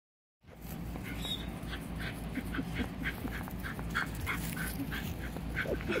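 Puppies whimpering and yipping in a string of short, high squeaks, about three a second, over a steady low rumble.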